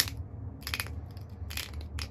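Flint biface being pressure flaked with an antler flaker: sharp crackling snaps as pressure flakes pop off the edge, three of them, the first the loudest.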